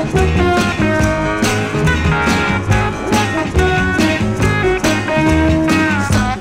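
A 1968 go-go pop single playing from a 45 rpm vinyl record: a band passage with guitar over a steady beat.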